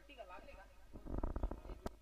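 A faint voice, then a short run of low rumbling crackles and one sharp click near the end: handling noise on the commentator's microphone.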